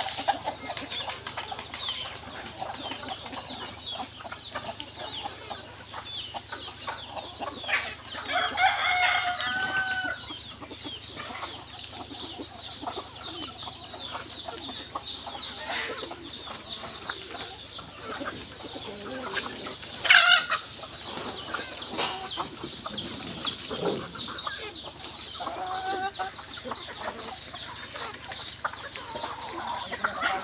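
Free-range native chickens clucking around a yard, with a rooster crowing a long call about eight seconds in and a fainter call near the end. A brief loud sound about twenty seconds in stands out over a steady high-pitched chirring.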